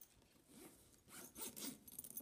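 The zipper of a soft laptop carrying case being pulled closed around its edge, faint and scratchy, in a couple of short runs.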